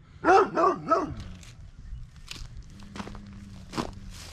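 Dog barking three times in quick succession, followed by a few footsteps.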